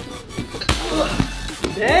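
Background music, with a sudden impact about two-thirds of a second in: a hard kick landing on a stack of diaper packets held as a shield.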